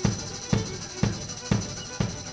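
Live chamber music mixing bluegrass and minimalism: bowed strings sustain and repeat short figures over a drum struck steadily about twice a second.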